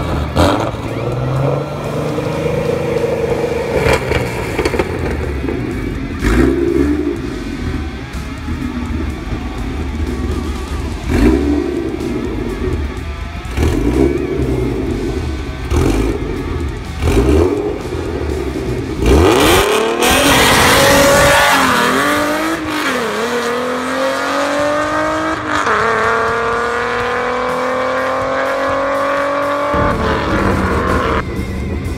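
A Ford Mustang's 3.7-litre V6 idles at the drag-strip start line with repeated short revs. About 19 seconds in it launches and accelerates hard down the quarter mile, its pitch climbing and dropping back at each upshift.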